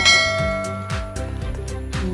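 A single bell-like chime sound effect, the notification-bell ding of a subscribe-button animation, strikes right at the start and rings out, fading over about a second and a half, over background music with a steady beat.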